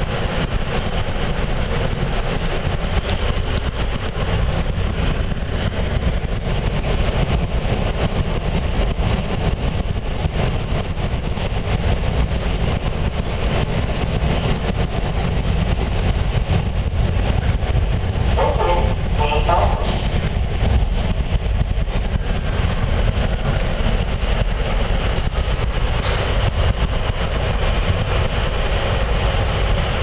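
Inside an R160 New York City subway car running between stations on elevated track: a steady loud rumble and rattle of the wheels on the rails and the car body, with a brief higher rattling about two-thirds of the way through.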